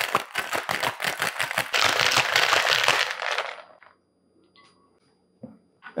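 Ice and liquid rattling fast in a stainless steel cocktail shaker shaken hard for about three and a half seconds, then stopping. A faint click comes near the end.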